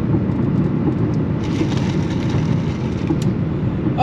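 Steady low rumble of a car heard from inside the cabin, with a faint sip through a straw in the middle and a single click about three seconds in.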